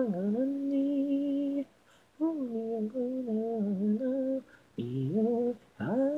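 Unaccompanied female singing voice, the isolated vocal track of a J-pop anime song, holding long notes with small pitch glides. The phrases break off for short breaths three times: about two seconds in, about four and a half seconds in, and near the end.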